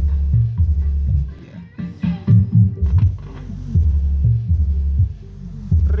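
Music played through a homemade tone control's subwoofer channel with the song's vocals filtered out, leaving mostly deep bass notes coming in a steady rhythm.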